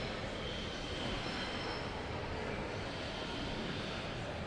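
Steady ice-rink ambience: skate blades gliding and scraping on the ice over the even hum of the arena.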